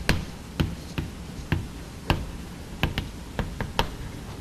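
Chalk writing on a blackboard: about ten sharp taps and clicks as the chalk strikes the board, unevenly spaced.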